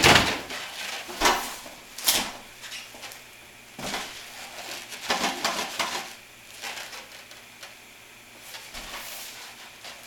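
Packaging and a heavy inverter being handled on a table: a loud thud right at the start, then scattered knocks, scrapes and cardboard rustles as a boxed inverter is lifted and stood on end.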